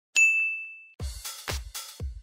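A bright single chime 'ding' as a logo sound effect, ringing out for most of a second. About a second in, electronic background music starts, with a kick drum beating about twice a second.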